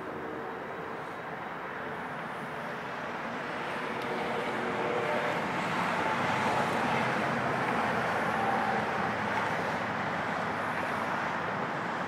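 Caterpillar TH83 telehandler's diesel engine running, heard from inside the open cab, getting louder from about four to six seconds in.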